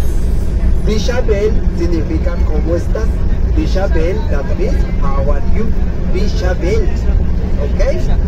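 A man talking through a handheld microphone and the bus's loudspeakers, over the steady low rumble of the moving bus's engine and road noise.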